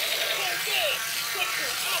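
Indistinct voices talking in the background over a steady hiss.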